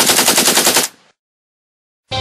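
Rapid automatic gunfire at about ten shots a second, stopping abruptly about a second in.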